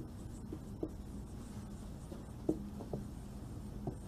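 Marker writing on a whiteboard: several short, separate squeaks and taps of the marker tip on the board.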